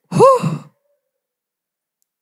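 A person's voice: one short drawn-out vocal exclamation, its pitch rising and then falling, lasting about half a second before the sound stops.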